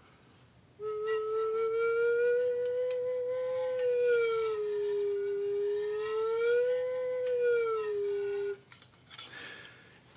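Tin whistle with its finger holes taped over, played as a makeshift slide whistle by moving a wooden spoon in its bore: one long note, starting about a second in, that slides slowly up and down twice before stopping shortly before the end.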